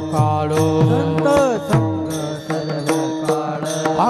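Varkari devotional bhajan music: brass hand cymbals (talas) struck together in a steady rhythm, with pakhawaj (mridang) strokes whose low notes fall in pitch, under sustained chanting.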